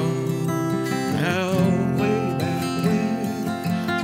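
Acoustic guitar accompaniment: chords played and ringing on between sung lines of a slow folk-style song.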